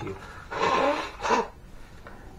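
A man blowing his congested nose into a paper tissue. One long blow of about a second starts half a second in, with a second short push near its end. The nose stays blocked.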